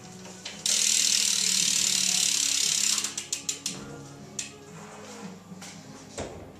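BMX rear hub freewheeling as the rear wheel is spun: the hub's pawls give a loud, fast ratcheting buzz for about two seconds. The buzz then breaks into separate clicks that slow down as the wheel loses speed, with a few last clicks later on.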